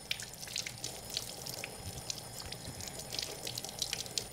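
Tap water running over hands being washed, fairly faint, with many small splashes and drips as the fingers are rubbed under the stream.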